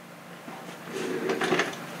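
Paper towel rustling as it is handled and crumpled, with a few light clicks, growing louder about halfway through.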